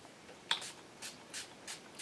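Pump spray bottle of liquid ink misting onto watercolor paper: a quick series of about five short sprays, each a brief hiss, starting about half a second in.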